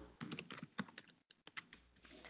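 A series of faint, irregular clicks and taps over about a second and a half, fading out near the end.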